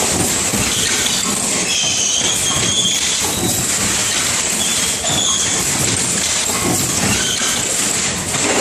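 Automated lighter production machine running: a loud, steady mechanical clatter and rattle, with a few brief high-pitched squeals about two seconds in and again about five seconds in.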